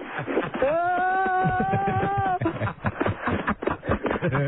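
A man's long held wail, like a drawn-out "whoa", rises at its start and lasts nearly two seconds, amid laughter.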